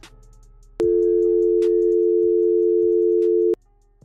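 A telephone line tone as an outgoing call is placed: one steady two-pitch tone, held for nearly three seconds, then cut off suddenly.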